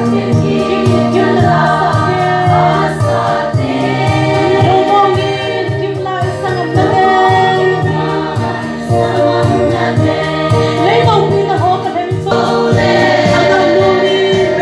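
A women's choir singing a gospel hymn together, over a steady, rhythmic low accompaniment.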